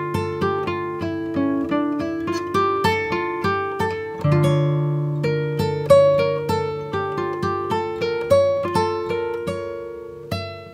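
Background instrumental music of plucked notes, guitar-like, picked about three a second over held low bass notes, dying away near the end.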